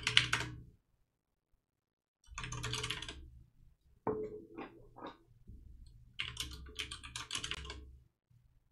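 Typing on a computer keyboard in short bursts of rapid keystrokes, with pauses of about a second between bursts.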